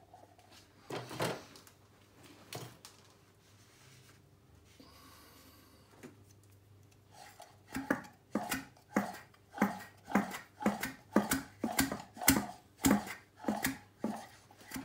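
A Mercury 3.3 hp two-stroke outboard powerhead being turned over by hand by its flywheel, to check that the crank spins freely after reassembly. There are a couple of knocks early on. In the second half there is a regular pulse about twice a second as the crank is spun round.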